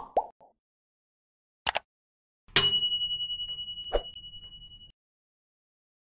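Animated logo sound effects: two quick, falling plops, a pair of clicks, then a loud, bright ding that rings out for about two seconds, with a short knock partway through its fade.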